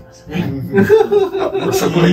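Men chuckling and laughing together over a few spoken words.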